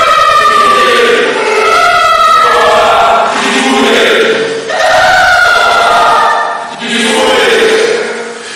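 A short voice clip stacked 1,024 times over itself, so the many copies blur into a dense, choir-like chanting mass. The phrase repeats about every two seconds, with brief dips between the repeats.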